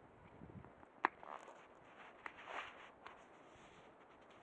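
A sharp click about a second in, followed by a few short scuffs and smaller clicks, over faint outdoor background hiss.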